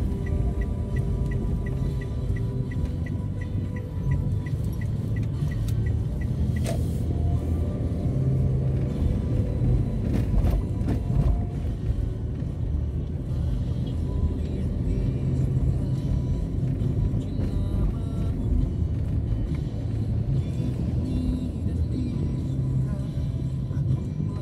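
Music with a steady bass line playing over the low rumble of a vehicle on the move. A light, even ticking about twice a second runs through the first several seconds and then stops.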